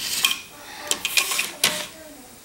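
Rubber bands being pulled and let go on a plastic loom under the fingers: a handful of short clicks and rustles.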